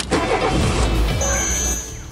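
A car engine starting and revving over background music.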